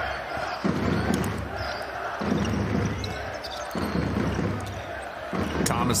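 A basketball being dribbled on a hardwood court, with the general din of an arena crowd around it.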